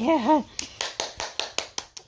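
After a brief shout, a quick, uneven run of about ten sharp hand claps.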